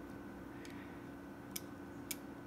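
A couple of faint clicks from the spring-loaded brake pedals of a die-cast Farmall H model tractor being pressed by a finger and springing back, over a faint steady hum.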